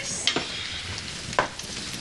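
Steady background hiss with faint rustles and a brief faint sound about one and a half seconds in.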